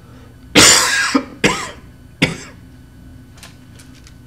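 A man coughing three times in quick succession, the first cough the longest and loudest.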